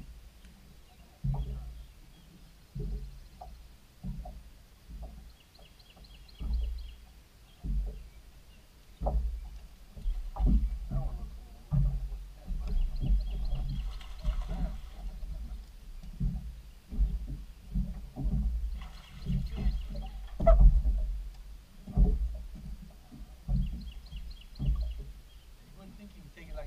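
Water slapping against a boat hull in a series of irregular low knocks, more frequent in the second half. A hooked fish splashes at the surface about fourteen seconds in, and a bird calls in short ticking runs several times.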